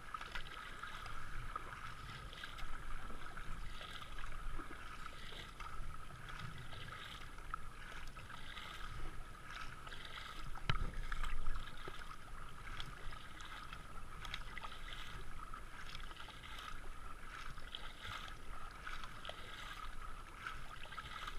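Kayak paddle strokes splashing into the river in a steady rhythm, about one a second, over the rush of water along the hull. One louder splash comes about halfway through.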